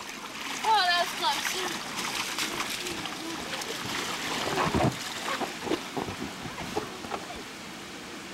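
Water splashing in the shallow splash pool of an inflatable water slide as children land and move about in it, with a child's high-pitched call about a second in and other children's voices.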